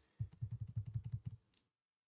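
A quick, even run of light computer-keyboard clicks, about ten a second, that stops about a second and a half in.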